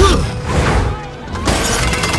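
Film fight sound effects of a crash of smashing metal and breaking debris, over background score music. A second sharp impact comes about one and a half seconds in.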